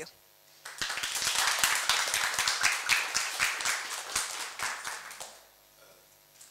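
Audience applauding at the end of a talk. The clapping starts about a second in and dies away a little after five seconds.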